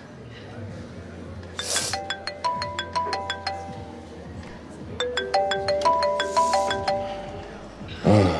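Smartphone ringing with an incoming call: a repeating ringtone tune of short, clear notes that starts about two seconds in, pauses briefly, then plays again.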